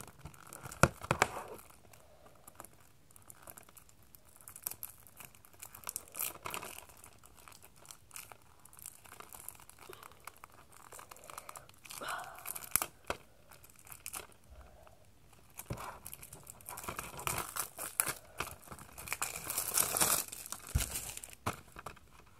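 Plastic wrapping on a DVD case being picked at, torn and crinkled off: irregular spells of crackling and tearing with quiet gaps between, busiest about a second in, around twelve seconds in, and again near the end.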